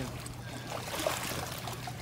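Pool water sloshing and trickling as a person wades through it towing an inflatable float, over a low steady hum.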